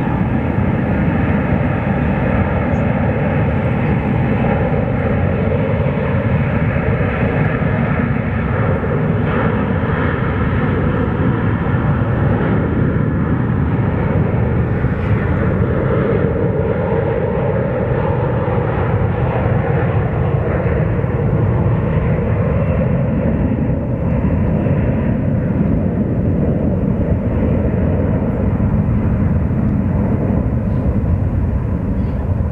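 Jet engines of an Airbus A330 airliner at takeoff power during the takeoff roll: a steady, loud rush of noise with several steady engine tones running through it.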